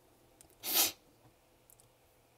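A single short, sharp burst of breath from a man close to the microphone, lasting about a third of a second and coming just over half a second in.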